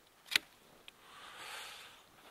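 Pruning secateurs snipping through a rose cane with one sharp click, cutting it back just above a bud. A faint second click follows, then a soft rustle for about a second.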